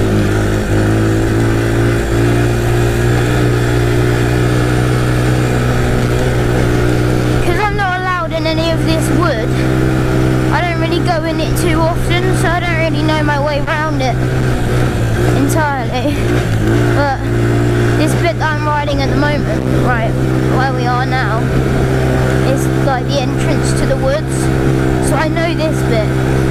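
A quad bike's engine running at a steady pitch under way, held on an even throttle.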